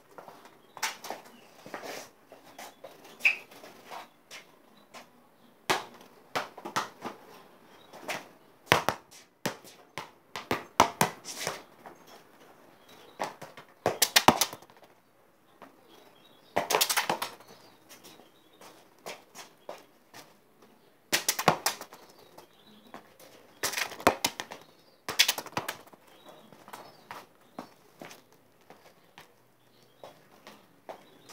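A football being touched, tapped and kicked by foot on stone paving, with shoes scuffing and stepping: irregular knocks, some coming in quick runs of several touches.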